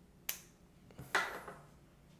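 Spring-loaded finger-prick lancing device clicking as it fires: a sharp click, then about a second later a louder, slightly longer snap.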